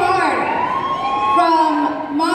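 Several voices shouting long, drawn-out calls, overlapping, their pitch sliding up and down and held for stretches, in a large reverberant gym.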